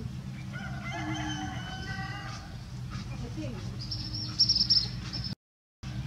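Animal calls over a steady low hum: a drawn-out pitched call with several overtones about a second in, then a brief, loud, high chirping burst near the end.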